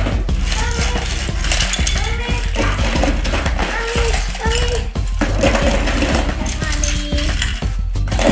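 Small plastic and die-cast Thomas & Friends toy trains clattering against each other as they are scooped from a pile and dropped into a plastic storage bin: many quick, irregular clicks and knocks.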